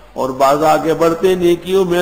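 A man's voice chanting Quranic Arabic in a melodic, drawn-out recitation, with long held notes, coming in after a brief breath pause at the start.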